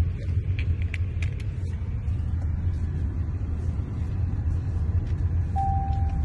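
Steady low rumble of a car on the move, heard from inside the cabin, with a few faint clicks early on. A faint steady tone comes in near the end.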